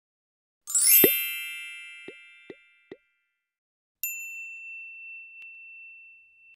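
Logo sting sound effects. A bright, shimmering multi-note chime comes in about a second in and rings away, then three short pops, each dropping quickly in pitch. A single high ding follows about four seconds in and is held as it slowly fades.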